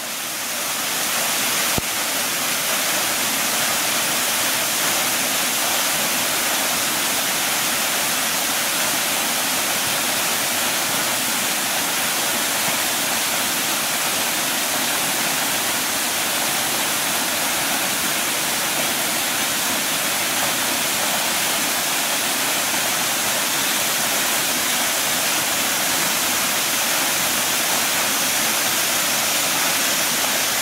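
Silverband Falls, a narrow waterfall dropping down a rock face onto rocks and a pool, giving a steady rush of falling water. It fades in over the first second or two and then holds even throughout.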